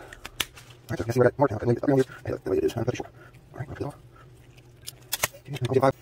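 A few sharp, short clicks from handling a small piece of brass stuffing tube, the loudest about five seconds in, with a brief spoken "okay".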